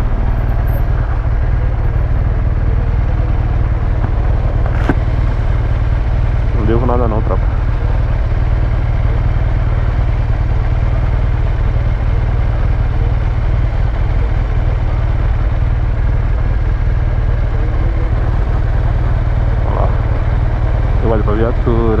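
BMW GS boxer-twin engine idling steadily at a standstill, its exhaust de-baffled. Brief voices come in about seven seconds in and again near the end, and there is a single click around five seconds.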